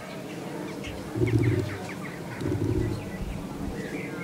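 Birds in the surrounding trees: small birds chirping, and two low cooing notes about a second apart, the louder sounds.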